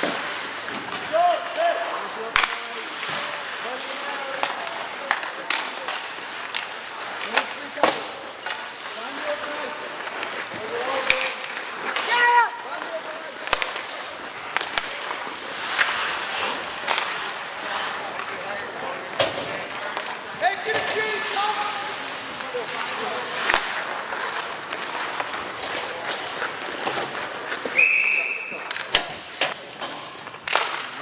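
Ice hockey game in play: sharp clacks of sticks and puck on the ice and boards and skates scraping, under spectators' scattered shouts and chatter. A short, high referee's whistle sounds near the end.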